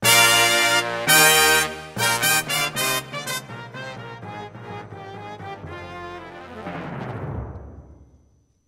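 Live music from a choir with electronic keyboard accompaniment: two loud held chords with a brass-like tone, then a run of short punchy chords, dying away and fading out near the end.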